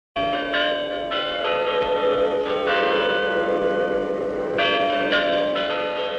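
Large clock-tower bells ringing a slow run of struck notes, each note ringing on under the next. These are the chimes of the Kremlin's Spasskaya Tower clock.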